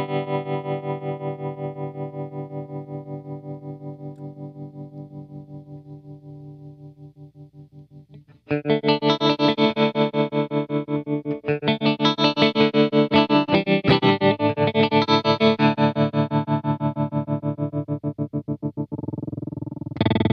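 Electric guitar played through a Dreadbox Treminator analog tremolo pedal: a held chord pulses rapidly and evenly in volume as it fades away, then a new chord is struck about eight seconds in and rings on with the same fast pulsing.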